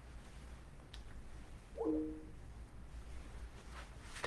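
Quiet room with a steady low hum. A faint click comes about a second in, and a short two-note squeak or tone follows just before two seconds, with a small rustle near the end.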